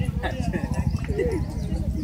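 Two cocker spaniels play-fighting, with short dog vocal sounds and scuffling mixed into the chatter of people close by, over a steady low rumble.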